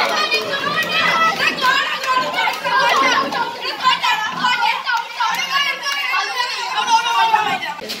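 A crowd of schoolboys shouting and laughing at once, many excited voices overlapping.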